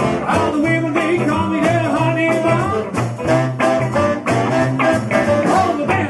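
A live band playing: electric guitar, saxophone, upright double bass and drums, with the bass keeping an even pulse under the melody.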